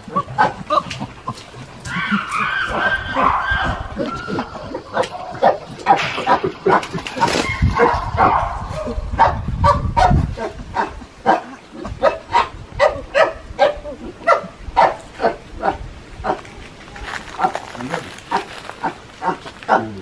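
Chimpanzees vocalizing: a long run of short calls, coming about two a second for much of the time, with a denser, higher-pitched stretch in the first few seconds.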